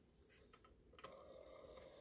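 Near silence: a small motorized display turntable turning, with only a faint ticking whir that comes in about a second in.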